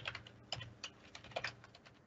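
Computer keyboard typing: a faint, uneven run of keystrokes, several a second.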